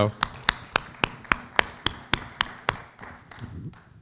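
Applause for a person just introduced: one person clapping close to the microphone at about four claps a second, over lighter clapping from a small audience. The clapping stops a little under three seconds in and the hiss fades soon after.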